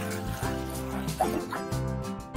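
A dog barking and yipping a few times in short calls over background music.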